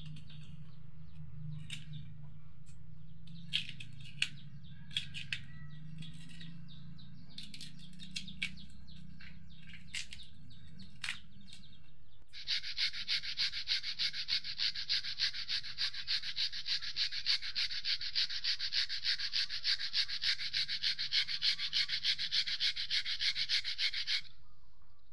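Knife scraping and cutting the skin off young cassava roots: scattered clicks and scrapes over a low steady hum. About halfway through this gives way to the cassava being rubbed on a hand-held metal grater, a rapid, even rasping at about four strokes a second.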